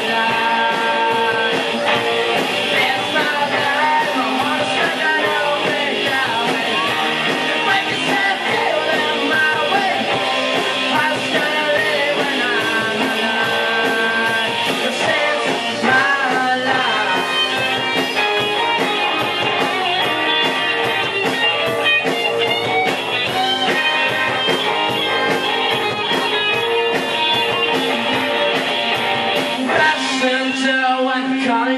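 A rock band playing live: electric guitar over a steady drum beat.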